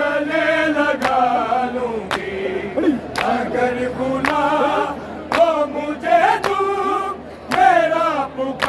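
A group of men singing an Urdu noha lament together. Sharp hand strikes about once a second mark the beat.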